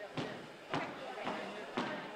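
Four sharp knocks in an even beat about half a second apart, over background chatter.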